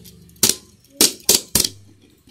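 Tomica die-cast toy Toyota Alphard van knocked down onto a tabletop: four sharp clacks, one about half a second in, then three in quick succession a second in.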